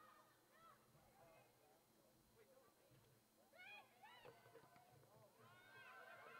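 Faint honking of a flock of geese, many short overlapping calls, with a thicker burst a little past the middle and another near the end.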